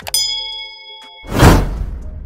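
An edited-in bell sound effect: a sharp ding that rings on for about a second. It is followed by a loud rushing swell that peaks and fades, the loudest moment.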